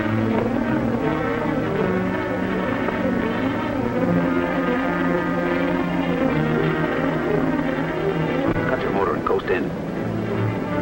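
Dramatic orchestral film score with fast wavering string runs over sustained low notes, and a rising sweep near the end.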